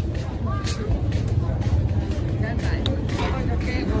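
Outdoor street-market background: a steady low rumble with faint, distant voices.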